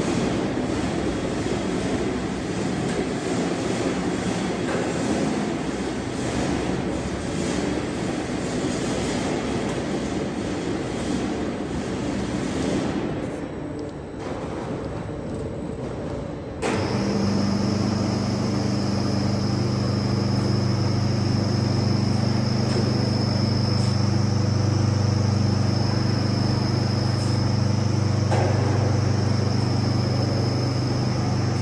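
Crane machinery lifting a packed machine on a strap. For the first half there is a rough, noisy engine-like rumble. A little past halfway it switches suddenly to a steady electric hum with a thin high whine.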